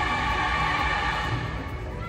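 Music with many held notes, turning quieter near the end.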